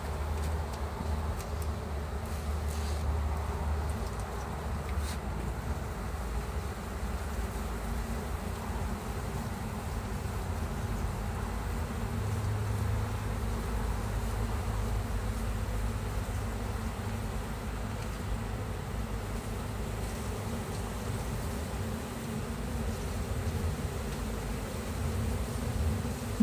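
Honey bees buzzing steadily around an open hive box as a honey frame is held up over it, over a low rumble.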